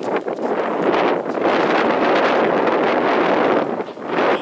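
Wind gusting across the camera microphone: a loud, steady rushing noise that eases near the end.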